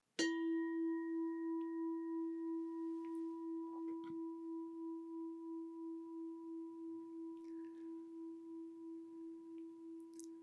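A singing bowl struck once, ringing on with a steady low note and a few higher overtones. The ring fades slowly with a gentle, regular pulsing waver.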